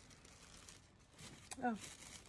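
Faint wind noise from outside, rising a little after about a second, with a click and a short spoken "oh" near the end.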